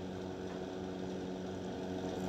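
A steady low hum with faint even background noise: room tone.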